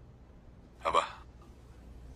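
A man's voice says one short, sharp word, "Apa?" ("What?"), a little under a second in; otherwise quiet room tone with a faint low hum.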